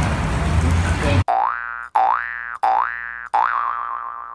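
About a second of street background noise, then a cartoon 'boing' sound effect plays four times in a row, each a quick upward glide in pitch. The fourth boing wobbles and fades away.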